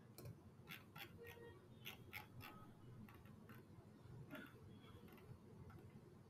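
Faint, irregular clicks of a computer mouse's scroll wheel, a few in quick runs, over a low steady hum.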